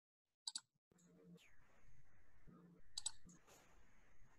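Near silence with two brief clicks, about half a second in and about three seconds in, over faint room noise.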